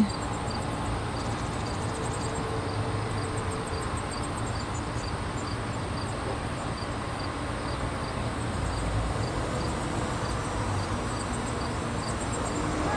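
Outdoor ambience of insects chirping steadily, a faint high chirp repeating a little more than twice a second, over a low steady rumble.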